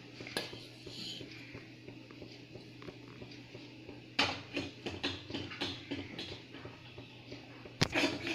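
A plastic spoon stirring flattened rice (aval) flakes in a nonstick pan: faint scraping, then a run of light clicks and knocks from about four seconds in, with one sharp click near the end.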